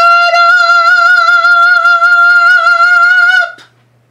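A woman's voice holding one long, loud, high sung note with vibrato for about three and a half seconds: a drawn-out "shut" that ends in a short "up!".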